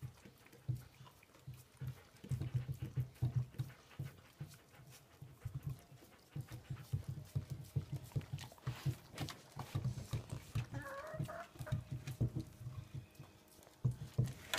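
Dogs licking and gnawing at blocks of frozen water holding dog biscuit and frozen vegetables, a fast irregular run of wet lapping sounds with short pauses.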